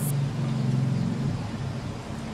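A man humming low and steady with his mouth closed, getting ready to sing, breaking off briefly near the end.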